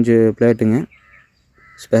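A man's voice talking, then a pause holding two faint, short calls from a bird in the background, one about a second in and one near the end.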